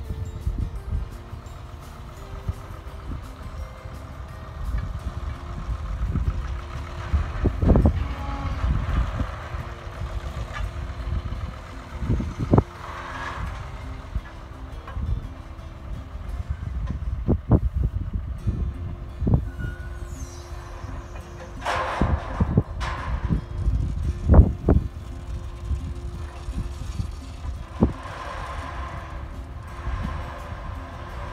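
Ruston-Bucyrus RB30 cable dragline working: its engine running under a gusty low rumble, with a scattering of clanks and knocks from the winch and clutch gear as the bucket is worked. The loudest clank comes about two-thirds of the way through.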